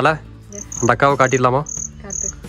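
Cricket chirping outdoors: short, evenly spaced high-pitched chirps, a few a second, with a person's voice briefly in between.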